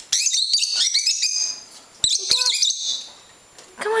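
Lovebirds chirping: a rapid run of high chirps through the first second and a half, then another burst about two seconds in.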